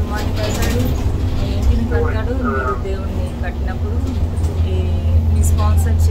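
Steady low rumble of a moving airport shuttle bus, heard from inside the cabin.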